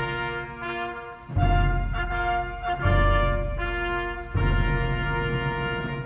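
Brass instruments play music in long held chords over a deep bass, with a new chord coming in about every one and a half seconds.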